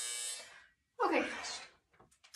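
Workout interval timer's electronic buzzer giving a steady buzz that cuts off about half a second in, signalling the end of a timed work interval.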